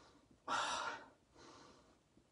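A man sniffing deeply through his nose at the mouth of an open hot-sauce bottle: one long sniff about half a second in, then a fainter breath about a second later.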